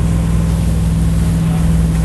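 Malibu wake boat's inboard engine running steadily at towing speed of about 12 mph, a constant low hum.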